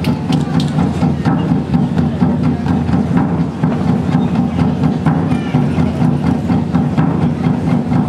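Ensemble of hand drums, djembes and frame drums, played together in a steady, fast rhythm.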